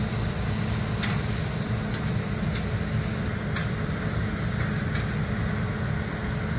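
Steady low mechanical rumble with a few faint clicks.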